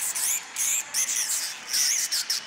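Hardstyle track in a breakdown with no kick drum or bass: high, chirping synth sweeps that bend up and down over a hiss.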